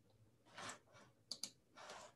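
Two quick, sharp clicks of a computer control advancing a presentation slide, between two faint breaths into the microphone.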